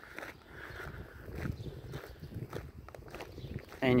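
Quiet footsteps walking over a lawn, a few soft, uneven steps.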